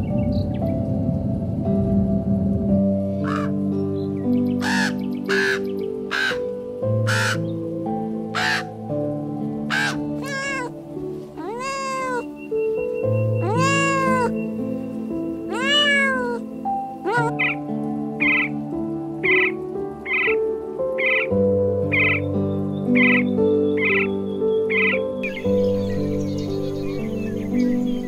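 Soft background music with animal calls over it: first a run of short, sharp calls, then a cat meowing several times in long meows that rise and fall in pitch, then an evenly spaced series of short calls.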